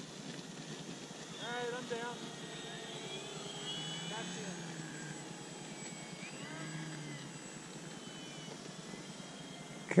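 Faint high whine of a distant electric radio-controlled model airplane motor, its pitch drifting up and down, with faint voices of people talking in the background.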